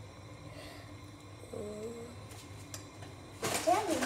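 A person's short hummed sound a bit before halfway, over quiet room sound, then a couple of faint clicks and a voice starting near the end.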